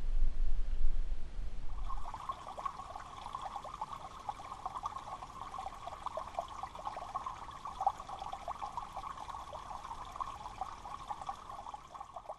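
Water trickling and bubbling steadily, as from a small stream, after a low rumble in the first two seconds.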